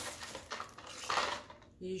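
Plastic packaging and hard plastic kitchen items being handled and moved about, rustling with a few light knocks.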